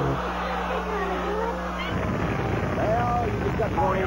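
Game-show studio audience groaning and murmuring as a Whammy comes up on the board. From about two seconds in, the Whammy cartoon's sound effects and squeaky character voice join in.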